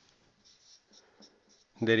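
Marker pen writing on a whiteboard: a few short, faint strokes. A man's voice starts speaking near the end.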